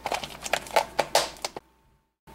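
Clear plastic Plano tackle box being handled and its lid closed: a quick run of light plastic clicks and taps, which cuts off suddenly about a second and a half in.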